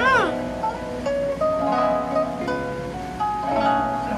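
A song with a singing voice over plucked acoustic guitar, the notes held steadily.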